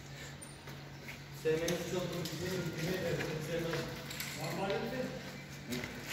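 Indistinct voices talking, starting about a second and a half in, over a steady low hum.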